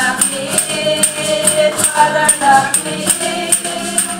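A congregation singing a hymn together with acoustic guitar accompaniment, and hand percussion jingling steadily on the beat about three times a second.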